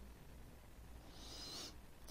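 Near silence: faint room tone, with a brief faint high-pitched hiss and whistle about a second in.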